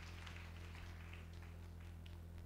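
Faint steady low hum from a PA sound system, with faint scattered ticks above it.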